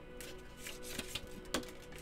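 Oracle cards being shuffled by hand: a scatter of soft card flicks and taps, the sharpest about a second and a half in, over quiet background music with held tones.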